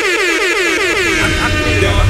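Loud air-horn sound effect: a horn in quick repeated falling blasts that settles into one held note. A deep rumbling boom comes in near the end.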